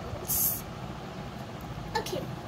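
A short hissing 's' sound from a child's voice about half a second in, over steady low background noise.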